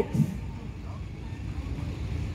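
Steady low rumble of city street traffic, with the tail of a man's voice just at the start.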